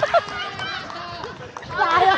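Men's voices calling out over one another, with no clear words.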